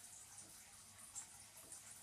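Near silence, with one faint short sound about a second in as a knife cuts through a soft plastic swimbait lure.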